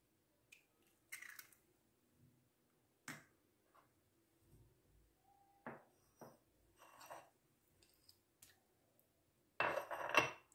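Faint, scattered taps and clicks of kitchen utensils being handled around a mixing bowl. Near the end comes a louder, short clatter of a metal spoon against the bowl as butter is scooped.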